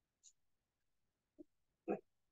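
Near silence, with a faint short hiss early on and a brief voice-like sound just before the end.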